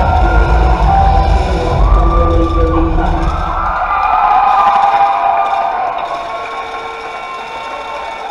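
Dance music with a heavy bass beat cuts off about three seconds in at the end of the routine, and an audience cheers and shouts in the hall, gradually dying down.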